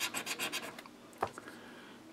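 Scratch-off lottery ticket being scratched by hand, its coating rasping in quick repeated strokes that fade out about a second in, followed by a single short tap.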